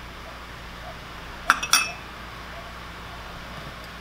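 Two sharp glass clinks about a quarter second apart, roughly one and a half seconds in: a small glass prep bowl knocking against glass as the diced jalapeños are scraped into the glass mixing bowl and the dish is put down.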